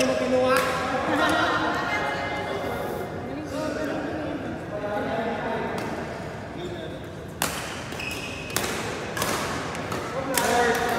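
Badminton racket hitting a shuttlecock: several sharp smacks in the last three seconds, in a large sports hall, over background voices.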